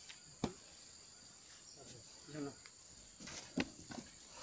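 Faint steady high-pitched insect drone, with a few soft clicks and knocks, one about half a second in and a cluster near the end.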